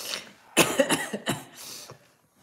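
A woman coughing several times in quick succession, then drawing a breath, while choked up with emotion.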